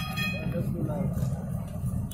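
Street sound: a steady low rumble with faint voices in the background, and a vehicle horn sounding that fades out just after the start.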